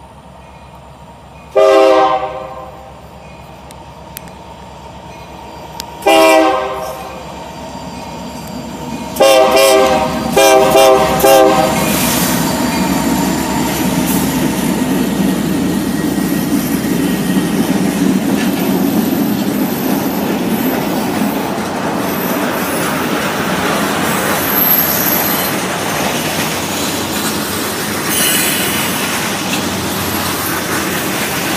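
A Union Pacific freight train's locomotive horn sounds four chord blasts in the first twelve seconds, the third one short. Then the diesel locomotives run past close by, followed by freight cars rolling over the rails with a steady rumble and clatter.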